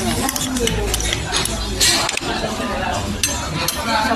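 Restaurant ambience: background voices with scattered clinks of ceramic dishes and cutlery.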